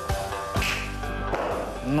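Background music with a steady beat, with the thud and scuff of a standing long jump landing on a rubber gym platform about halfway through.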